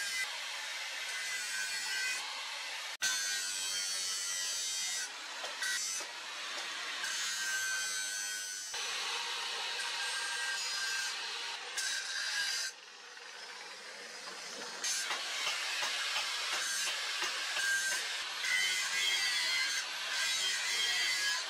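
Angle grinder with an abrasive disc grinding a forged steel machete blade: a continuous high, rasping grind of abrasive on metal that shifts abruptly in loudness and tone several times.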